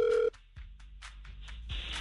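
Telephone ringback tone, a steady buzzing tone, that cuts off about a third of a second in as the call is answered, leaving a faint open phone line with a few small clicks.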